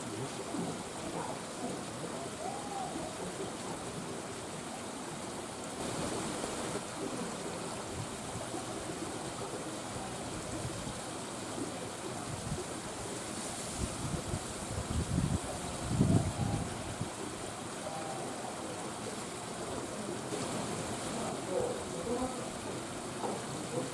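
Steady rushing outdoor background noise, like running water, with faint distant voices. A few louder low thumps come about two-thirds of the way through.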